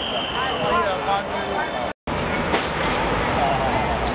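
Players' voices calling out indistinctly on a football pitch, with a long steady high whistle that ends about a second in. After an abrupt cut about halfway through come short sharp thuds of the ball being kicked.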